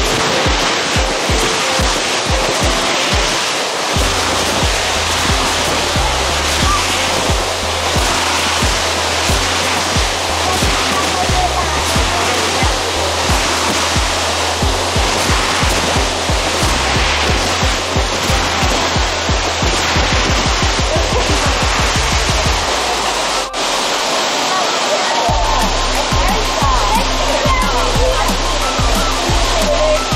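Steady rush of a waterfall, with background music carrying a regular bass beat over it.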